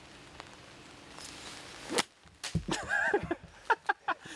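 A golf club swishing through a short chipping swing and striking the ball off the grass with one sharp click about two seconds in, followed by a brief voice exclamation.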